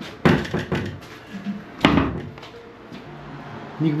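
Wooden wardrobe door being handled: a sharp knock about a quarter second in, a few lighter bumps, and the loudest thud near two seconds in.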